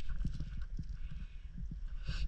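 Irregular soft knocks and taps over a low rumble as a hand gropes among rocks and seaweed in a shallow rock pool.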